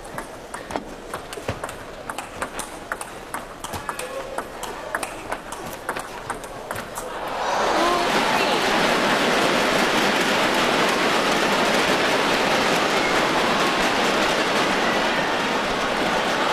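A table tennis rally: the celluloid ball clicks sharply and irregularly off the rackets and table for about seven seconds. Then the crowd breaks into loud applause and cheering, which carries on to the end.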